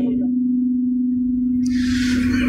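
A steady, low, single-pitched electrical hum from the microphone and sound system, holding one note without a break, with a soft hiss coming in near the end.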